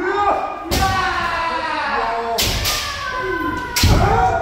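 Kendo practice: several players' drawn-out kiai shouts overlapping, with three sharp impacts of bamboo shinai strikes and stamping feet (fumikomi) on the wooden dojo floor.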